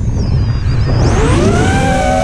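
FPV racing quadcopter's brushless motors whining, throttle low at first, then spooling up in a rising pitch about a second in and holding a steady high whine. Wind rushes over the onboard microphone throughout.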